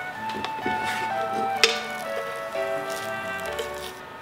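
Background music: a gentle melody of held notes stepping from pitch to pitch, with one sharp click about a second and a half in.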